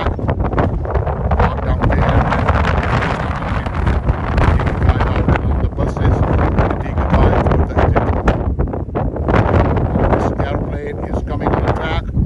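Strong wind buffeting a phone's microphone: a loud, uneven rumble that rises and falls in gusts.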